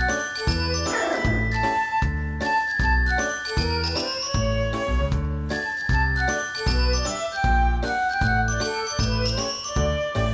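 Background music: an upbeat instrumental with a bright, bell-like tinkling melody over a steady bass beat.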